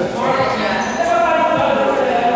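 Indistinct men's voices echoing in a large indoor sports hall, with faint knocks from the badminton court.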